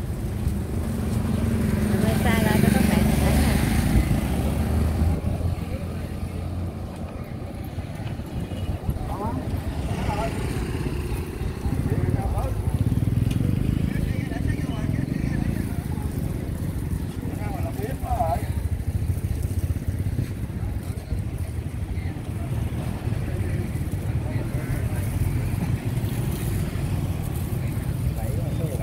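Street traffic: a steady rumble of passing vehicles, swelling to its loudest as one goes by a few seconds in, with people talking in the background.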